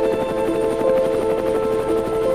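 Music of held notes that change in pitch, over the fast, even chop of a helicopter rotor.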